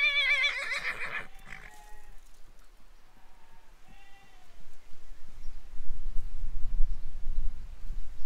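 A horse left alone in its field whinnying: one long quavering neigh at the start, with a fainter call about four seconds in. From about five seconds on, an uneven low rumble on the microphone.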